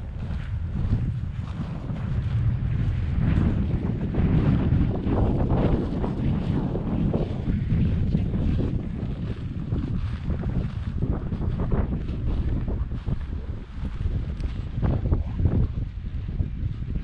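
Wind buffeting the camera's microphone: a loud, gusty low rumble that swells and eases, heaviest in the middle.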